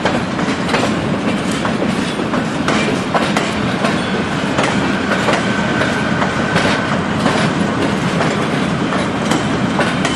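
Union Pacific passenger cars rolling past, their wheels clicking irregularly over rail joints and switch points under a steady rumble. A thin wheel squeal is held for about two seconds midway.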